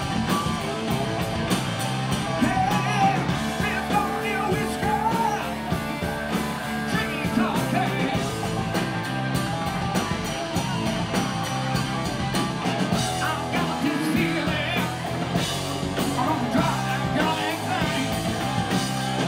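Live rock band playing, with a male lead singer's vocals over electric guitar and drums.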